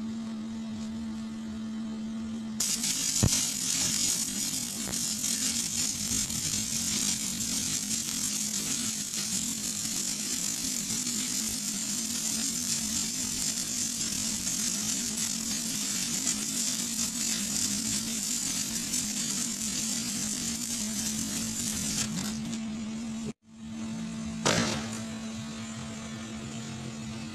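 Shielded metal arc (stick) welding on pipe: the arc strikes about two and a half seconds in and crackles and sizzles steadily for about twenty seconds, then stops. A steady electrical hum runs underneath, and a brief burst of noise comes near the end.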